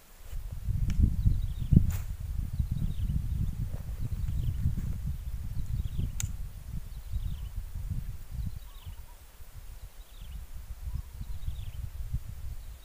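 Low, gusty rumble of wind buffeting the microphone, with a bird repeating a short descending call about once a second and two or three sharp clicks.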